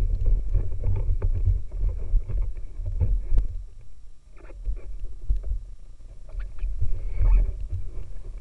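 Bumping and scraping of a paddler in a drysuit climbing into a whitewater boat: deep, uneven knocks and rumble from the hull and gear carried straight into the boat-mounted camera, with a couple of sharper knocks around the middle and near the end.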